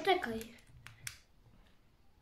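A child's voice trailing off, then two faint clicks of a small plastic toy car's parts being handled, about a second in.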